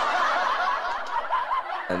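Laughter, thin-sounding and without low tones, made up of many small wavering high-pitched voices like a laughing sound effect, with a man's speech beginning near the end.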